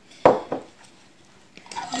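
A glass jar packed with peppers set down on a wooden tabletop: one sharp knock, then a smaller second knock just after.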